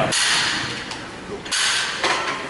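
Metal clatter from a seated cable row machine as its handle is let go: two sudden rattling bursts, one at the start and another about a second and a half in.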